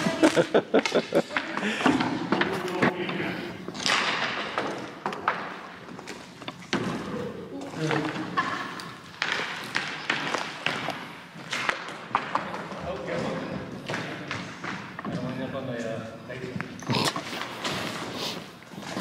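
Hockey stick knocking and scraping on a worn wooden gym floor: a string of irregular thuds and knocks in a large empty hall, with voices and laughter in between.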